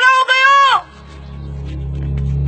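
A loud, high-pitched shout: drawn-out yelled syllables that stop under a second in. A low droning music bed then rises in their place.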